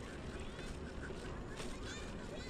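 Steady rumble of a bicycle rolling along a paved path, with wind on the microphone, and a few faint short high chirps over it.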